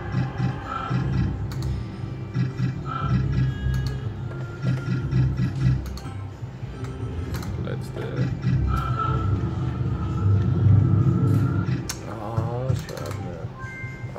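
Novoline Book of Ra Magic slot machine playing its free-spin game sounds: electronic tones and repeated clicks as the reels spin and stop, over a steady low hum.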